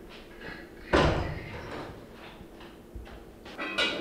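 A wooden door bangs shut about a second in. Near the end, a metal pot lid clanks and rings briefly as it is lifted off a stainless steel cooking pot.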